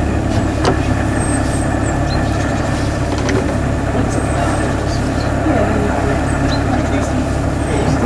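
A canal cruiser's engine idling with a steady, even low rumble, with a few faint high chirps over it.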